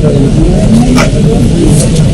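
People talking in a room over a loud, steady low rumble.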